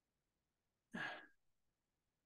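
Near silence, broken about a second in by one short sigh, a man's breath let out.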